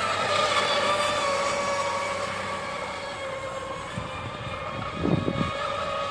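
Radio-controlled racing boats running at speed across the water, their motors giving a steady high whine. A brief low thump comes about five seconds in.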